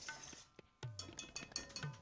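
Metal kitchen utensils clinking lightly against a metal karahi: a quick series of small, sharp clinks starting about a second in, after a brief moment of near silence.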